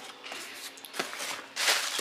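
Hand rummaging in a cardboard shipping box of packed items: faint rustling of cardboard and packaging with a light knock about a second in, the rustling growing louder near the end.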